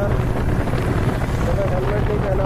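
Motorcycle engine running steadily at road speed with wind noise on the microphone. A singing voice drifts over it near the end.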